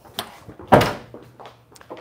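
A car door being shut: one solid thunk about three-quarters of a second in, with a lighter click just before it.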